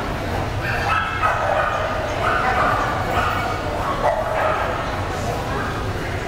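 Dogs barking, several short barks about a second apart, over the murmur of people talking and a steady low hum.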